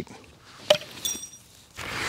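A single sharp click from handling a steel spike and a cordless drill, about two-thirds of a second in, followed shortly by a brief high, thin tone.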